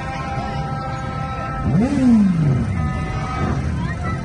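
Street celebration din: several horns held on at once, giving steady tones, under a constant traffic-and-crowd roar. About two seconds in comes one loud whooping shout that swoops up and then slides down in pitch.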